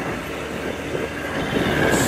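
Jeep running up a rough, unpaved mountain track, its body and load rattling and jolting continuously over the bumps, heard from aboard the vehicle.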